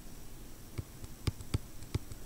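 About four light clicks and taps from a stylus writing on a pen tablet, spaced unevenly over the second half, over a faint room hiss.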